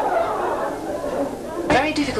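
Many voices chattering at once in a large hall. Near the end it cuts abruptly to a low steady hum, with a single voice starting.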